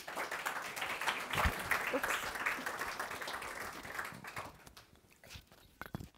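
Audience applauding, a dense patter of many hands clapping that dies away about four and a half seconds in.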